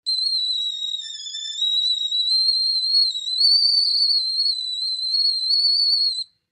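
A cartoon sound effect: a sustained high-pitched whistling tone that wavers slightly in pitch, laid over a character's flaming-eyes anger.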